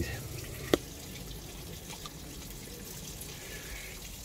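Faint steady hiss of background noise, with a single sharp click about three-quarters of a second in.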